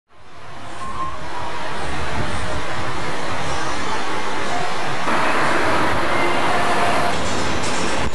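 Street ambience with traffic noise, fading in at the start and then steady. About five seconds in it turns brighter and busier, with faint voices and music mixed in.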